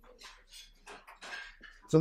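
Faint, scattered clinks of tableware in the room.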